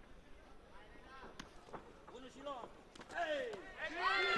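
Scattered shouts and calls from spectators and corners around a kickboxing ring, growing louder and denser near the end, with one sharp knock about a second and a half in.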